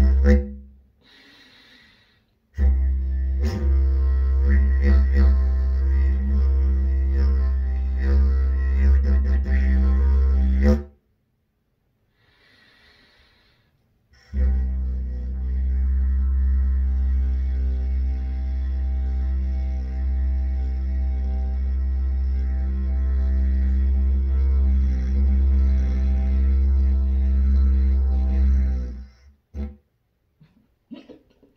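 Wooden didgeridoo without a bell, played as a low steady drone with a stack of overtones above it, in three long blows. It breaks off twice for a breath, about a second in and again around eleven seconds in, and stops just before the end.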